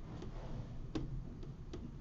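A few faint, sharp clicks at uneven intervals over a low steady room hum.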